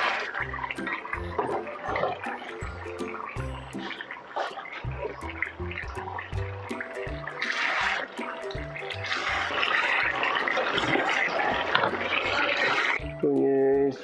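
Background music with a stepped bass line. From about halfway through, a hiss of the duck curry bubbling and sizzling in the pan as it is stirred with a wooden spoon comes in over it and stops about a second before the end.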